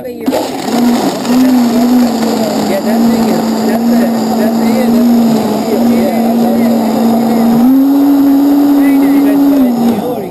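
Commercial Drink Machine countertop blender running at full power, crushing ice and strawberries into a margarita mix, with a steady motor hum. Its pitch steps up about eight seconds in, and it cuts off near the end.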